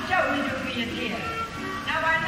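Stage performers' voices with music playing underneath, in a live audience recording of a Broadway musical.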